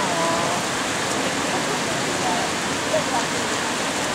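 Steady rushing of a waterfall and its whitewater rapids.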